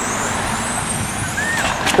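Electric 1/10-scale touring cars with 17.5-turn brushless motors racing on asphalt: a high motor whine that climbs in pitch as the cars accelerate, over a steady hiss.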